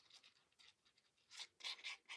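Faint scratchy rubbing of a glue applicator tip being wiped across the back of a sheet of paper, in a few short strokes that come thickest near the end.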